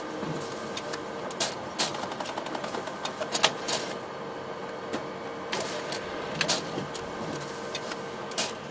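Photocopier running: a steady hum with irregular sharp clicks and clunks of its mechanism.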